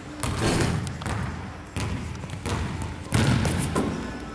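Basketball bouncing on a hardwood gym floor: about five separate thuds, a little under a second apart, each ringing out in the hall's echo.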